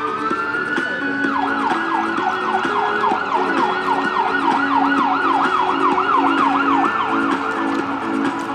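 An emergency vehicle's electronic siren: a slow wail rising at the start, then switching about a second in to a fast yelp, sweeping up and down about two and a half times a second, heard over music.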